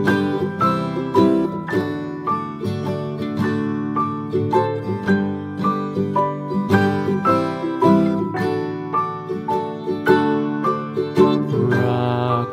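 Background music: a plucked-string instrumental, a continuous run of picked notes over a steady lower part.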